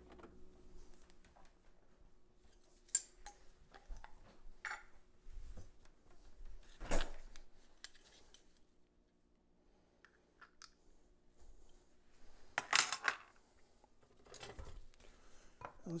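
Scattered clinks and knocks of a metal spoon against glass, a jar of minced garlic and a glass mixing bowl being handled, with the sharpest clink a little before the end. A faint steady hum runs under the first half.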